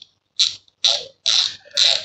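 The front drag knob of a Shimano 5000 XG spinning reel being turned by hand, its ratchet clicking in four short runs, about two a second.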